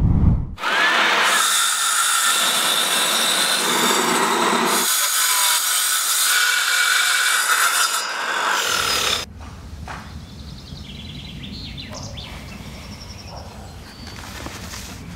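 Handheld circular saw cutting wooden boards, with a high-pitched cutting noise that starts about half a second in and stops at about 9 seconds. The sound shifts a couple of times, as over more than one cut.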